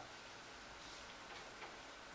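Quiet room tone with faint ticking.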